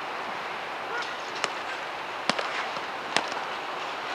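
A futsal ball being kicked: three sharp, short kicks a little under a second apart, over steady open-air background noise.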